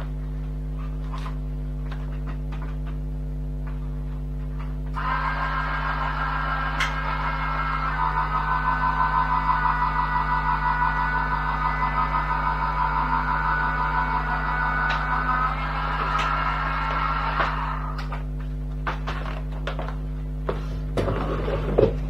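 Crafters Companion Gemini electric die-cutting and embossing machine running an embossing folder through its rollers: the motor starts about five seconds in, runs with a fine rapid rattle for about twelve seconds, and stops.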